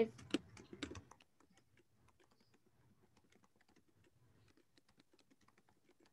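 Faint typing and clicking on a computer keyboard: many small, irregular clicks, a few louder ones in the first second.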